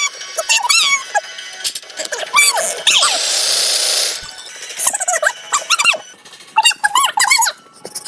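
Voices sped up many times over into high, squeaky, unintelligible chatter. A burst of hiss lasts about a second, starting about three seconds in.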